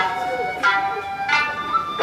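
Ryukyuan dance music: sanshin strings plucked about every two-thirds of a second, each note ringing on, with a sung melody over them.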